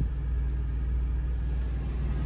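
2022 International semi-truck's diesel engine idling, a steady low rumble heard from inside the cab.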